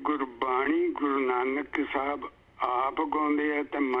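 A man's voice in long, drawn-out phrases, thin and narrow as over a remote call line.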